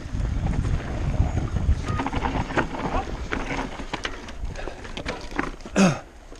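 Mountain bike descending a dirt forest trail: wind rumbling on the camera microphone, with tyre noise and rattles and knocks from the bike over the bumpy ground. A short loud shout comes near the end.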